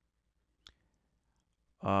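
A single computer mouse click, one short sharp tick about a third of the way in. Near the end a man's drawn-out 'uh' begins.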